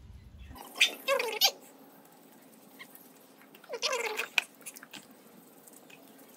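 Beagle puppy giving two short bouts of whining cries while being bathed, one about a second in and another about four seconds in, each falling in pitch.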